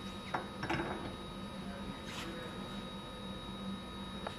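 A diamond tool being fitted onto a CNC tool presetter's mount: short metal knocks and scrapes about half a second in and again about two seconds in, over a steady hum.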